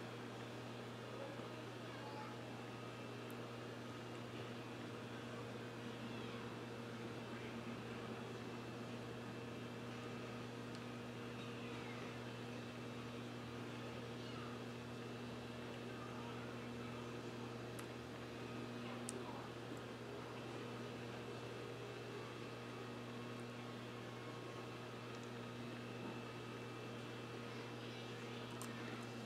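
Quiet room tone dominated by a steady low electrical hum, with faint, indistinct background sounds and an occasional small tick.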